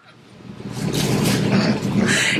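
Rustling of a curly synthetic wig being tossed and fluffed with the hands: a noisy swishing that builds up over the first half-second and carries on.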